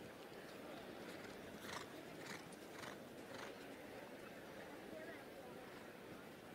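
Faint hoofbeats of a cantering show-jumping horse on turf, a little under two strides a second, over a low steady arena background.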